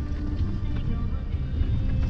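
Steady low rumble of a vehicle driving along a rough dirt road, with music playing over it.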